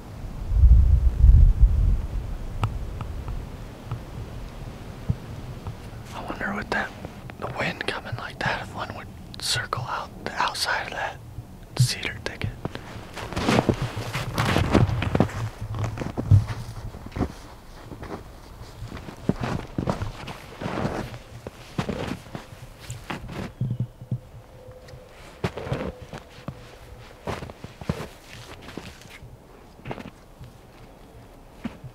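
Footsteps crunching through snow at a walking pace, irregular and densest in the middle stretch. A low rumble on the microphone fills the first couple of seconds.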